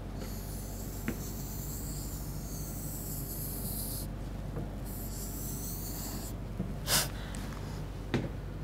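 A stylus rubbing across an interactive whiteboard screen as an outline is drawn: a high, wavering hiss for about four seconds, then again briefly, over a steady low electrical hum. About seven seconds in, a short, sharp breath is heard.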